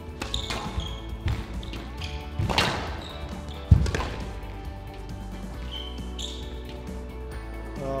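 Squash ball struck hard by rackets and hitting the court walls during a rally: a series of sharp cracks in the first four seconds, the loudest about three and a half seconds in, over background music.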